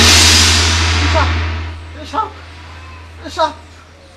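A sudden loud dramatic sound effect: a crash-like burst over a deep rumble that fades away over about two seconds, marking the woman's transformation into a cobra. After it come short high calls about once a second.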